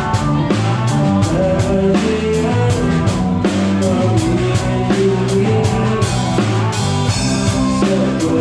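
Live rock band playing, with the drum kit heard close up: a steady beat of drum and cymbal strikes over held bass notes and other instruments.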